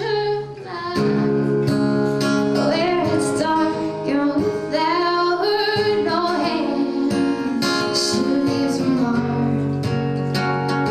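A woman singing a song with many long held notes, accompanying herself on a strummed acoustic guitar.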